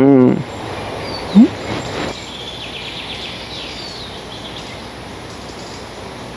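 Forest ambience: a steady outdoor hiss with faint, high bird chirps, after the last syllable of a woman's speech at the very start. A brief rising sound about one and a half seconds in.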